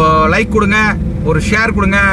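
A man talking over the steady drone of a vehicle driving along a road.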